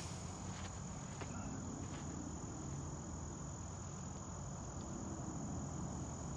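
Crickets trilling steadily in one unbroken high-pitched tone over a low outdoor rumble.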